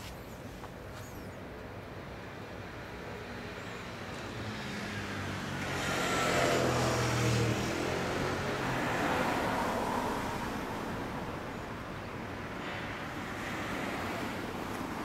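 A road vehicle passing by: its engine and road noise swell over a few seconds, peak about halfway through, then fade, with a fainter swell near the end.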